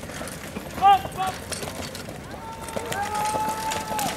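People calling out over the hoofbeats of a trotting carriage horse: a short, loud shout about a second in, and a long held call over the last second and a half.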